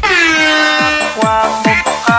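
Bombtek disco remix: a steady kick-drum beat under a long horn-like synth tone that slides down in pitch at the start and then holds. Short, repeated synth notes come in from about halfway.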